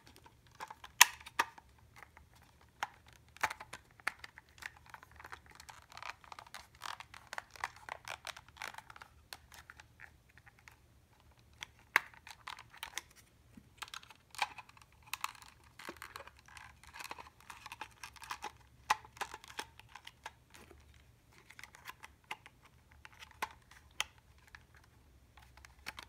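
Irregular small clicks, taps and rubbing from fingers handling a small plastic electronic tuner and its battery compartment, close to the microphone.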